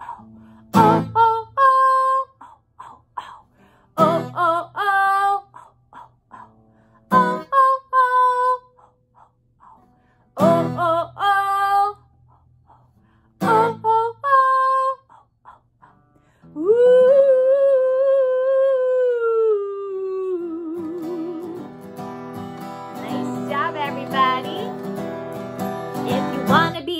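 A woman sings short two-note 'oh oh' calls over strummed acoustic guitar, five times about three seconds apart, leaving gaps for listeners to echo in a call-and-response. About two-thirds of the way in she holds one long sung note that slides downward, and then keeps singing over continuous strumming.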